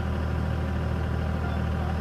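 Generator set engine running at a steady speed: a constant low drone.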